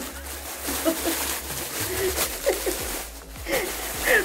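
A woman laughing in short, breathy bursts, with the rustle of a plastic bag being handled.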